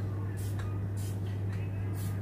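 WD-40 aerosol can giving two short sprays, short hisses, onto the sides of a slightly jammed robot-vacuum wheel motor to free it up. A steady low electrical hum underlies it.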